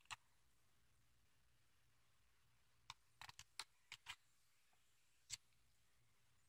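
Near silence with a few faint, short clicks, most of them in a quick cluster about halfway through, from a picture book's paper pages being handled and turned.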